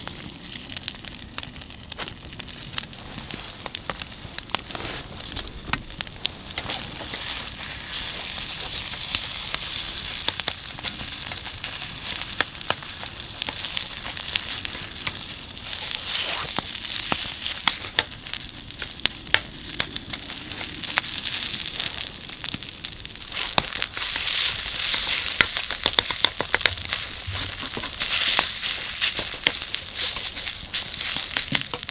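Egg and rice sizzling in a black iron pan over a wood fire, stirred with a metal ladle, with the fire crackling throughout. The sizzle grows louder about halfway through and again later on.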